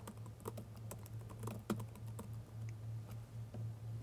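Typing on a computer keyboard: a run of quiet, irregular key clicks over a low steady hum.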